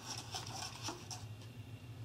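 Faint, irregular scratching and tapping of a paintbrush handle stirring liquid in a foam cup, over a low steady hum.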